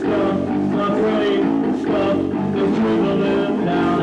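Rock band playing an unrehearsed jam, with guitar to the fore over a drum kit, loud and continuous.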